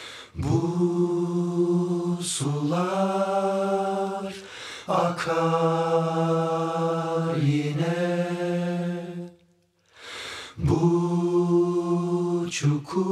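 A group of men's voices chanting into microphones in long held notes, each sliding up at the start and held for two or three seconds, with a short pause near the end.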